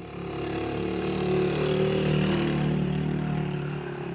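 A small motor vehicle's engine running steadily. It fades in and grows louder over the first two seconds, then eases off slightly.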